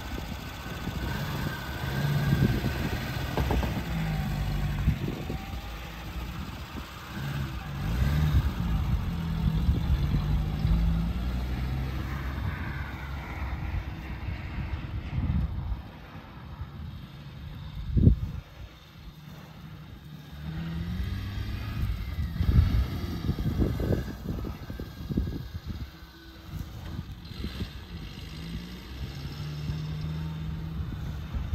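Small soft-top 4x4's engine driving across a grass field, its pitch climbing and dropping again and again through the gears. It fades as the vehicle moves off and grows louder as it comes back. There is a single sharp knock a little past halfway.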